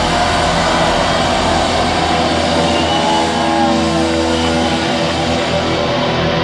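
Live rock band playing loud: electric guitars, bass and drums, with sustained chords and a few sliding guitar notes.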